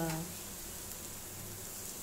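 Beans sizzling faintly and steadily in a steel pan on a gas stove, after a spoken word trails off at the very start.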